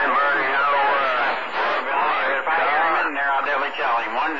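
A voice transmission coming in over a CB radio receiver on channel 28 by long-distance skip. The talk is too unclear to make out words, and the sound is cut off above about 4 kHz.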